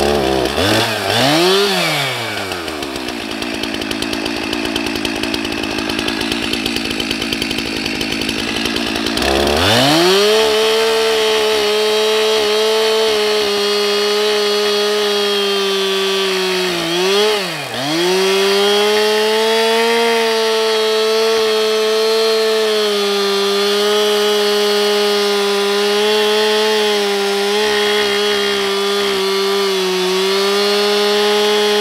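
Two-stroke chainsaw ripping lengthwise along a log, guided by a small bar-mounted chainsaw mill. It opens with a couple of quick revs and runs lower for several seconds. About nine seconds in it goes up to full throttle and holds a steady note in the cut, dipping sharply once in the middle before picking back up.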